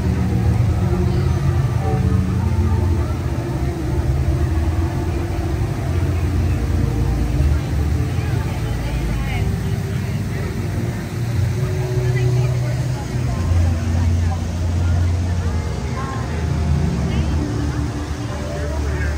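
Chatter of passing crowd voices over a steady low rumble.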